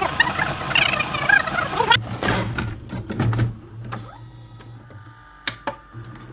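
Videotape rewind sound effect: for about two seconds the preceding speech is played back fast and garbled, then the tape mechanism whirs and hums with scattered clicks, and two sharp clicks come near the end.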